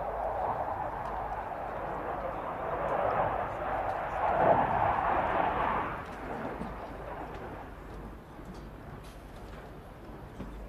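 Eurofighter Typhoon's twin EJ200 jet engines, a steady roar that swells to its loudest a little after four seconds in and then fades as the fighter moves away.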